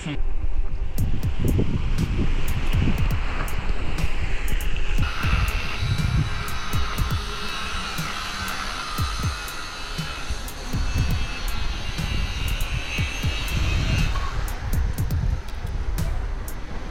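Wind buffeting a small action camera's microphone in irregular low gusts, with a steadier higher whine from about five seconds in until near the end.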